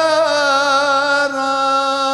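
Turkish folk music played live, a passage without lyrics in which a long melodic note is held at a steady pitch with a slight waver, shifting to a new note partway through.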